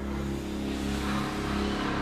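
Dark film score: a sustained low drone of held tones, with a hissing swell building above it from about half a second in.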